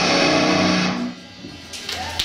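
Live death metal band ending a song on a held chord of distorted electric guitars and bass, which rings and cuts off about a second in. Scattered claps from the small crowd start near the end.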